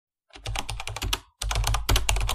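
Keyboard-typing sound effect: a fast run of key clicks, about nine a second, that stops dead for a moment about a second and a quarter in, then resumes.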